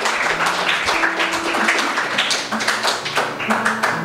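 Audience applauding: a steady, dense patter of hand claps.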